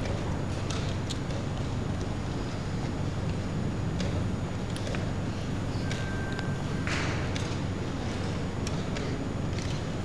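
Scattered sharp clicks of wooden chess pieces being set down and a chess clock being pressed during a fast blitz game, over a steady low room hum. A short electronic beep sounds about six seconds in.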